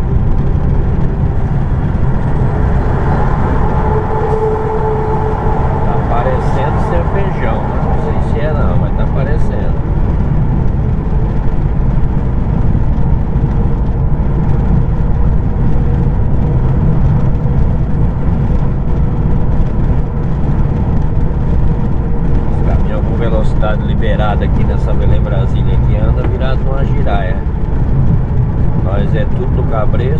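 Steady engine and road noise inside the cab of a heavy multi-axle truck cruising on the highway.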